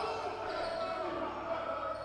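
Basketball game sound on an indoor court: a basketball being dribbled on the hardwood floor amid faint gym ambience, fairly quiet and even.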